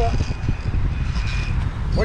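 Wind buffeting the microphone, with the faint high whine of an electric RC rock crawler's motor as it climbs over rocks and a log.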